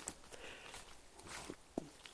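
Faint footsteps through grass strewn with fallen leaves, a few soft steps.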